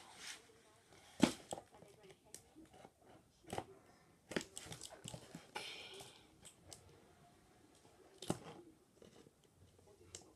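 Scissors cutting and scraping at the tape and cardboard of a toy's packaging box, with scattered sharp clicks and knocks as the box is handled.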